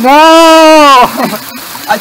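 Speech: a loud, drawn-out "No" in a high voice, then laughter, over water running across rock.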